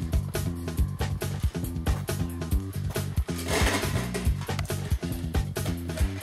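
Background music with a steady, quick drum beat over a bass line.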